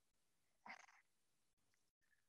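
Near silence, broken by one faint, brief sound just under a second in.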